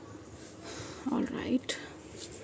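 A woman's voice, brief and soft, about a second in, with a single light tap just after.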